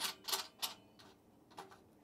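A few light metallic clicks and taps from the stainless steel tri-clamp fitting and heating element being handled, most of them in the first second and one softer one near the middle.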